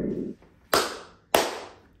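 Two sharp hand claps about half a second apart, each dying away quickly. A low rumble stops just before them.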